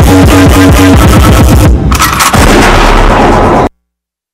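Loud dance-routine music mix with a rapid string of sharp, shot-like sound-effect hits over a steady bass, a short break, then a heavy low booming section. The track cuts off abruptly near the end, as the routine finishes.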